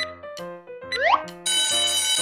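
Cartoon sound effects for a timer running out: a short countdown note, a quick rising glide about a second in, then an alarm-clock bell ringing steadily from about halfway through, signalling time's up.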